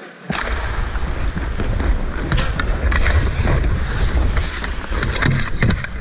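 Ice skates cutting and scraping the ice, with wind buffeting a helmet-mounted GoPro as a hockey player skates hard. The sound starts abruptly just after the beginning, and sharp clicks and knocks of sticks and puck come through it.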